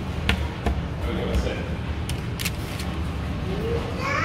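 Restaurant background: a steady low rumble and faint chatter, with a few sharp clicks and knocks, four in all, in the first two and a half seconds.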